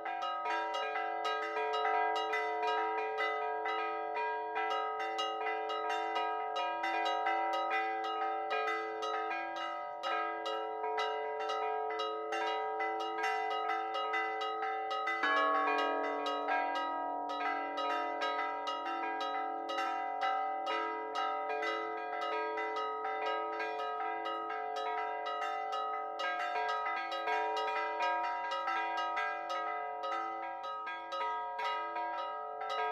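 Four church bells ringing a Maltese solemn peal (mota solenni), struck in rapid, continuous overlapping strokes. About halfway through a deeper bell note comes in and keeps sounding with the others.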